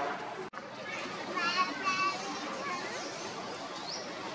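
Young long-tailed macaque crying: a run of short, high-pitched squeals about a second and a half in, after a brief gap in the sound.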